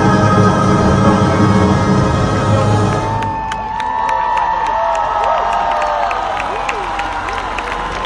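A salsa orchestra plays the final bars of a song, the music stopping about three seconds in. A crowd then cheers, whoops and applauds.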